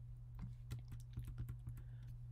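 Faint, irregular keystrokes on a computer keyboard, a dozen or so quick clicks starting about half a second in, while lines of code are being deleted.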